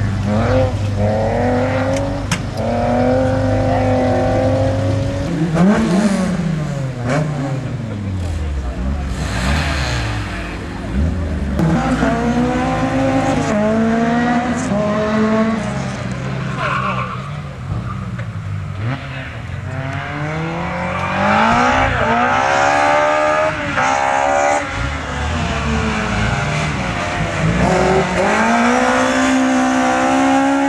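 Race car engines driven hard, the revs sweeping up through each gear and dropping at every shift and lift. In the second half this is a red Opel Corsa's C20XE 2.0-litre 16-valve four-cylinder with a six-speed gearbox. A steady low engine drone runs under the first five seconds.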